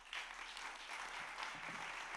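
Audience applause: steady, fairly soft clapping that starts just after the speaker finishes.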